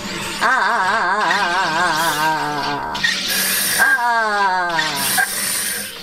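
Electric SodaStream carbonator injecting CO2 into a bottle of water on its strongest setting: a loud, warbling buzz whose pitch wobbles rapidly for a couple of seconds. It then slides down in pitch over a strong hiss of gas.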